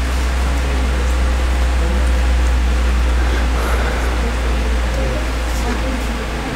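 Loud, steady low electrical hum with a hiss over it, coming through the sound system, and a faint voice beneath it. The hum comes from a microphone that is not passing the speaker's voice.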